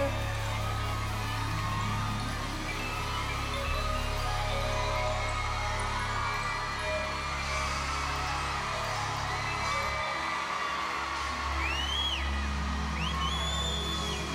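A live band holds a steady, low groove under the cheering of an arena crowd. Near the end, a few high-pitched screams and whoops rise out of the crowd.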